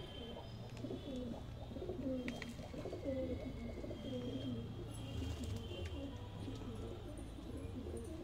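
Several domestic pigeons cooing at once, their low calls overlapping without a break.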